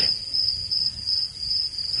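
Crickets chirping steadily as a high, even background trill, with a low rumble underneath.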